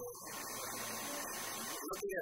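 A man talking in an interview over a steady background noise and a low electrical hum.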